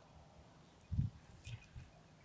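Three soft, dull thuds, the loudest about a second in, then two lighter ones close together, as a halved avocado is handled with a spoon and a knife.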